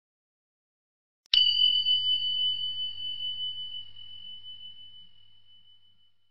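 A single high bell-like ding, struck once about a second in, ringing on as a clear steady tone that slowly fades away over about five seconds.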